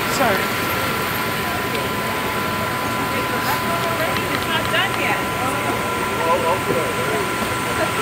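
Steady rushing background noise under faint, indistinct voices of people talking, with a thin steady high tone throughout.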